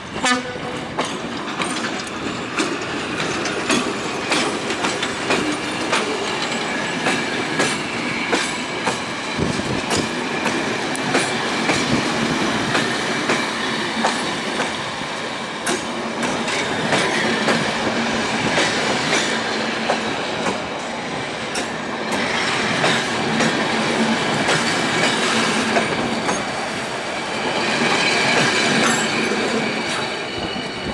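A Škoda-built electric locomotive and its passenger coaches rolling slowly past, the wheels clicking over rail joints and points. A high wheel squeal joins in the second half.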